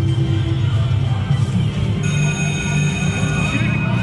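China Mystery slot machine playing its music and sound effects during the jackpot feature. Bright steady tones come in about halfway through as the feature lands on the Major jackpot.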